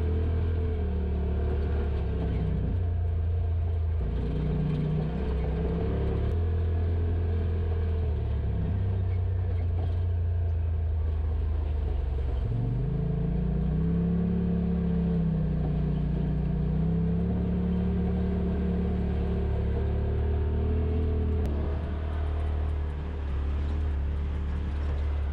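Polaris RZR Pro XP side-by-side's engine running steadily while driving a rough dirt trail. The engine pitch rises about halfway through as it speeds up, then holds.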